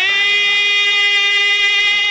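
A man's singing voice holding one long note at a steady pitch in a naat recitation.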